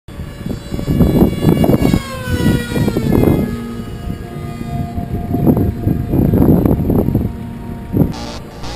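A Zephyr 2 FPV flying wing passing overhead in a fly-by: its motor and propeller tone drops smoothly in pitch as it goes by, about two seconds in. Gusts of wind buffet the microphone in surges throughout.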